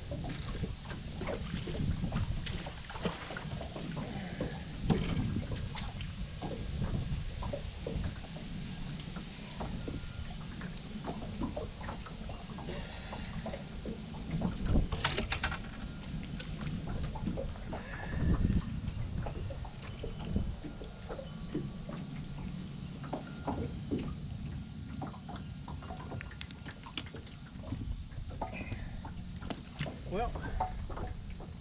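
Low rumble of wind and water around a small fishing boat, with scattered light knocks and clicks of handling on board; one sharper click comes about halfway through.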